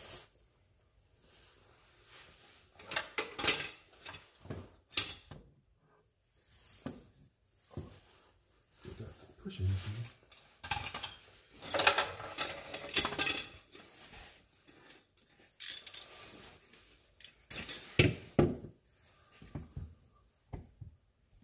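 Irregular metal clinks and clanks as tools and hardware are handled during work on a car's transmission from underneath.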